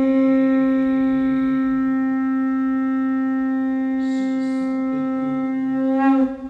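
A conch shell (shankh) blown for aarti in one long, steady note at a single pitch.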